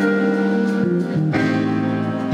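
Live band music from a theatre pit, with a Yamaha TRB 1006J six-string electric bass playing under sustained chords. The harmony changes about a second in and again shortly after.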